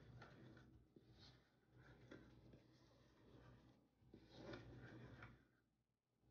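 Faint rustling and scraping of hands working flour in a ceramic mixing bowl, a little louder about four seconds in.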